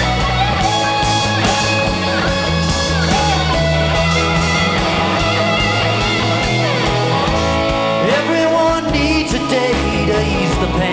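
Live rock band playing an instrumental passage: an electric guitar lead with bending, sliding notes over bass, drums and keyboard.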